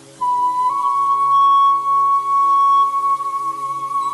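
Slow ambient meditation music: a soft sustained drone, then a flute enters suddenly about a quarter second in and holds one long note that steps slightly up in pitch early on and wavers gently.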